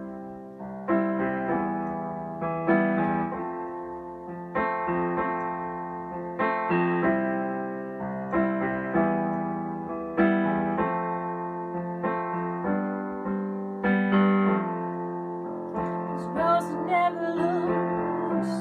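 Electric keyboard played with a piano sound: a slow solo introduction of chords struck every second or two and left to ring down. A woman's singing voice comes in near the end.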